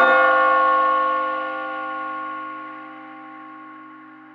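A single bell-like note in a hip-hop instrumental beat, struck once with no drums and left to ring out, fading slowly over several seconds as the track's closing sound.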